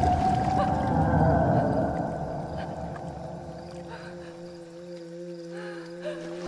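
Horror-film score: an eerie drone of several held tones over a low rumble that fades away after the first couple of seconds.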